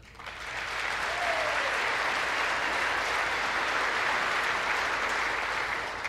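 A large chamber full of lawmakers applauding: the clapping swells over the first second, holds steady, and dies away near the end.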